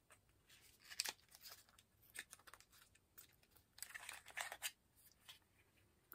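Faint rustling and crinkling of paper packaging and shredded paper filling as a small cosmetic bottle is taken out of its gift box, with a sharper tick about a second in and a denser patch of rustling around four seconds.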